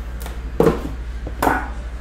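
Lid of a metal Panini Immaculate card tin being lifted off: a few sharp knocks and scrapes of metal, the loudest about half a second in and another about a second and a half in.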